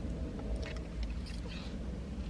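Quiet eating sounds in a car cabin: a fork picking at food in a paper bowl and chewing, heard as a few faint light ticks over a steady low rumble.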